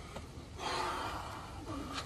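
A man breathing hard from exertion during weighted-vest burpees, with one long heavy breath about half a second in and a fainter breath sound near the end.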